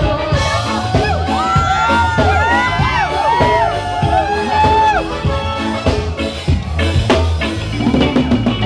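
A reggae band playing live with a steady bass line, while a crowd cheers and shouts over it. Many voices rise and fall together in the middle few seconds, and the drums come back in toward the end.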